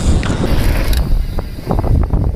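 Mountain bike riding fast downhill, heard from a camera mounted on the bike: a steady rumble of tyres over the trail, with chain and frame rattling in sharp clicks and knocks and wind on the microphone. About halfway through the hiss drops away and separate rattles and clicks stand out.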